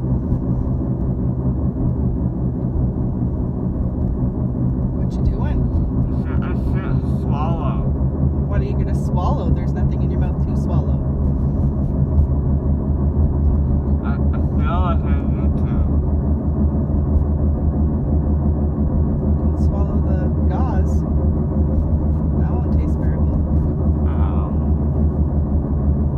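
Loud, steady low drone of a car cabin on the move: engine and road noise heard from inside the vehicle.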